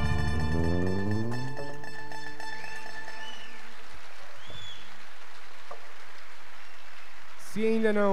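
A band's last chord on plucked acoustic strings, mandolin among them, over bass, ringing out and dying away over the first two seconds. After it comes a steady hiss with a few faint arching tones, and a voice starts near the end.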